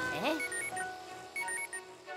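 Electronic alarm beeping from a tablet in quick short pulses, starting about one and a half seconds in, over cartoon background music. A short swooping cartoon vocal sound comes near the start.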